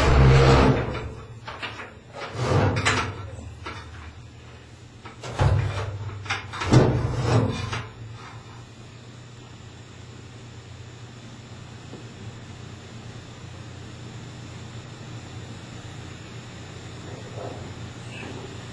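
Bucket elevator belt of a shot blast machine being hauled up by hand through its sheet-steel elevator casing: four bursts of rubbing and knocking within the first eight seconds, then only a steady low hum.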